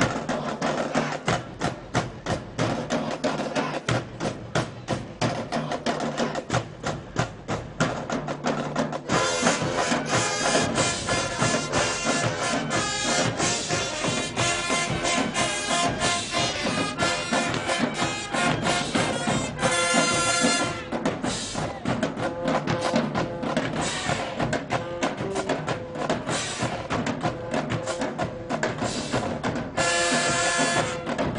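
High school marching band playing in the street: the drumline alone for about the first nine seconds, then the horns and woodwinds come in with the full band over the drums.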